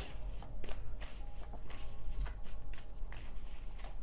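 A tarot deck being shuffled by hand: a run of quick, uneven card flicks and rustles.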